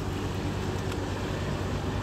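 Steady low hum of a car engine running nearby, over a wash of road traffic noise.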